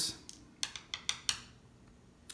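Game pieces being handled on a tabletop: four or five light, sharp clicks in the first second and a half, then quiet room tone.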